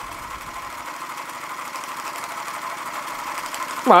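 Linemar Atomic Reactor toy steam engine running steadily under steam, a quiet, fast, even mechanical rhythm with a thin steady tone over it.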